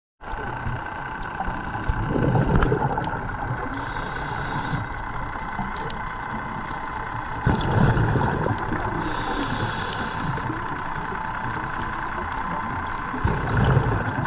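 Scuba diver's underwater breathing: a steady hiss with a deeper bubbling rush about every five and a half seconds, alternating with a higher hiss, in the rhythm of breaths through a regulator.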